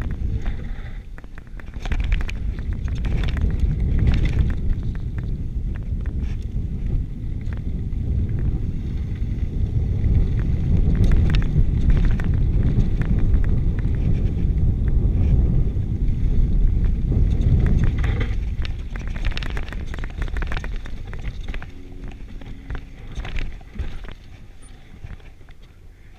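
Wind rumbling on the microphone and tyres rolling over a dirt singletrack as a Giant Full-E+ electric mountain bike descends, with frequent sharp clicks and rattles from the bike over bumps. It gets quieter near the end.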